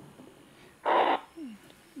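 A short blowing noise comes from laptop speakers playing received digital-radio audio through the DudeStar app, about a second in, followed by a brief faint falling tone. A blowing sound instead of clear voice is a sign that the digital audio link is not yet working properly.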